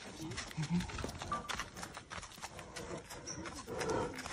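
Irregular crunching footsteps on a gravel path, with faint low voices in the background.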